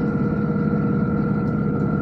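Passenger train running, heard from inside the carriage: a steady rumble with a constant hum.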